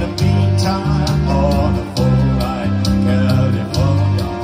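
A live band with guitars and keyboard playing a song, over a low bass line that moves between notes.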